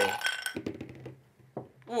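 A small die tipped out of a drinking glass clattering across a tabletop: a run of quick clicks that thin out within about a second, then one last tap.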